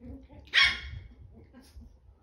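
A 10-week-old chihuahua puppy gives one sharp, high-pitched yap about half a second in during rough play, with softer low sounds before and after.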